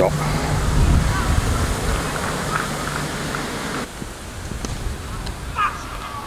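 Wind buffeting the microphone: a heavy rumble that eases off about four seconds in, leaving a softer hiss, with faint distant voices.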